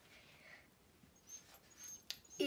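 Near silence: room tone, with a couple of faint, brief sounds in the second half.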